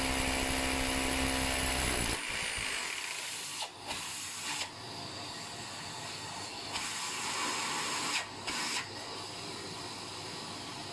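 Hammer drill with a masonry bit drilling into a plastered brick wall, a steady motor whine over the hammering. About two seconds in it drops to a quieter, thinner run, with a few brief dips.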